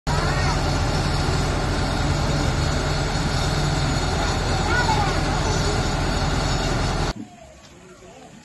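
Police water truck running with a loud, steady low mechanical hum as it dispenses water through a hose, with faint voices over it. The sound cuts off suddenly about seven seconds in.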